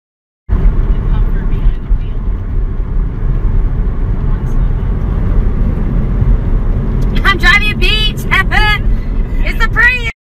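Steady low rumble of road and wind noise inside a moving car, starting about half a second in. From about seven seconds in, a voice joins with short pitched sounds that rise and fall.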